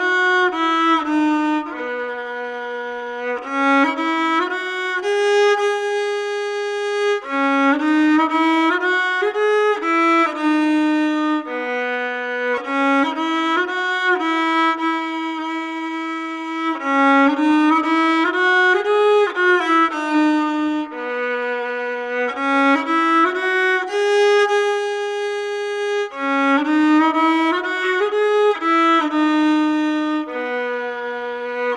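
Solo violin played with the bow, a slow melody of held notes with some sliding between them, in phrases that repeat about every nine to ten seconds.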